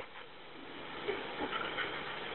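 Faint, steady hiss of a telephone line in a pause of the call, with a few weak, indistinct background sounds about a second in.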